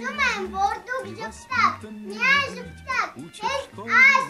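A young girl's high voice speaking expressively over background music with a steady low bass line.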